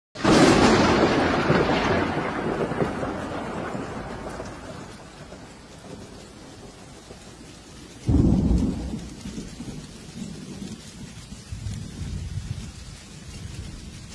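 Thunder over steady rain: a loud clap right at the start rolls away over several seconds, then a second peal breaks about eight seconds in and fades.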